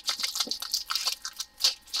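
Clear plastic bag of diamond-painting drills being handled, the plastic crinkling in irregular crackles.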